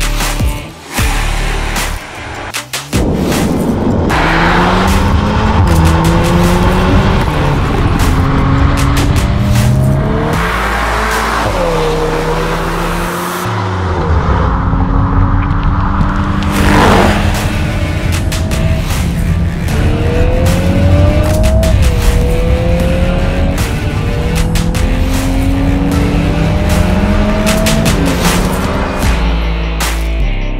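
Volkswagen Golf R Estate's turbocharged 2.0-litre four-cylinder engine at full throttle on a race track. It revs up in repeated rising runs, with a quick drop in pitch at each upshift, under background music.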